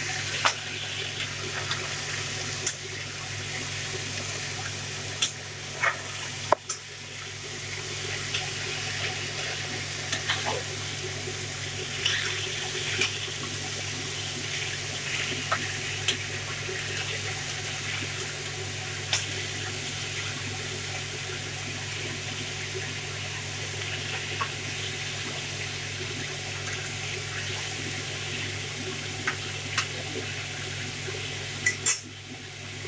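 Diced pumpkin sizzling in hot mustard oil in a metal kadai, a steady frying hiss. A metal spatula knocks and scrapes against the pan now and then while stirring.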